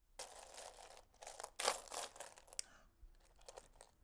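Loose buttons clicking and rattling in a box as a hand sifts through them. Several louder stirs come in the first few seconds, then a few lighter clicks near the end.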